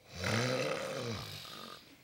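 Studio audience letting out a long, shared 'ooh', a reaction to the line just spoken.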